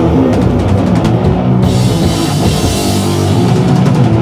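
Live sludge/doom metal band playing: heavily distorted low guitar and bass chords held under drum-kit hits. About one and a half seconds in, cymbals come in and keep ringing.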